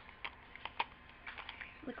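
Light, irregular clicks and clinks, about six in under two seconds, as makeup pencils and brushes knock against each other and a cup while being rummaged through.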